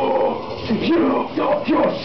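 A man's voice making short yelping vocal sounds into a microphone, three or four in quick succession, while the backing track drops back.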